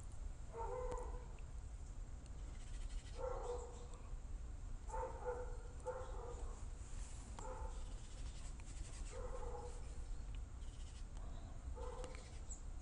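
Faint short animal calls, about seven in all at irregular intervals, each under half a second, over a steady low hum.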